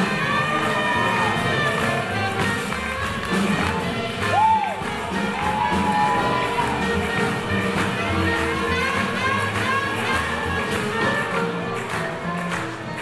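A live swing jazz band playing, with saxophone, upright bass and drums, and the audience cheering along.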